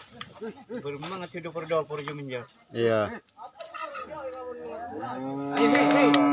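Bull bellowing: shorter calls in the first half, then one long, even-pitched bellow from about five seconds in, the loudest sound here.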